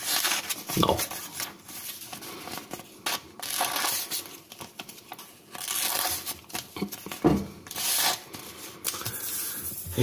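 Paper tearing and crinkling as a dull pocket-knife blade is pushed through a sheet, in several rough bursts rather than a clean slicing hiss. The blade is not sharp, so it rips the paper instead of cutting it. A short thump comes about seven seconds in.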